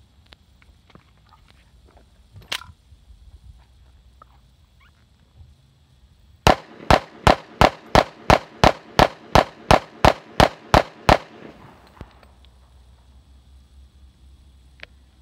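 Smith & Wesson M&P40 pistol in .40 S&W fired in rapid succession: about fourteen shots at an even pace of roughly three a second, lasting about four and a half seconds. A single sharp click comes a few seconds before the string of shots.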